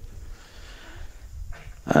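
A pause in a man's speech filled only by a faint low rumble of room noise; his voice comes back in just before the end.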